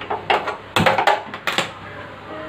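A quick run of sharp clicks and knocks at a gas stove as the burner knob is turned and the cast-iron tawa is handled on the grate, likely the burner's igniter clicking; the strongest clicks come about a second in, and the stove is quiet after about a second and a half.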